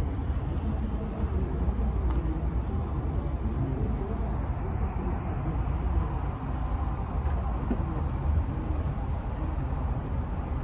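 An SUV's engine running as it drives slowly across a parking lot and pulls up, over a steady low rumble.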